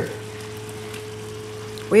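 Faint, steady sizzle from a pan of spinach curry simmering on a gas stove, over a steady low hum.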